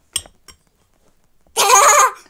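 Two light clinks of a spoon against a metal mixing bowl, then about a second and a half in a young girl's loud squeal with a wavering pitch, lasting about half a second.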